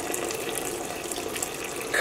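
Red acid dye bath draining in thin streams from a freshly dipped, soaked skein of wool-nylon sock yarn held above the stainless steel dye pot: a steady trickle of liquid falling back into the bath.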